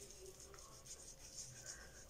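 Faint soft rubbing of a small facial sponge scrubbing over the skin of the face in repeated short strokes.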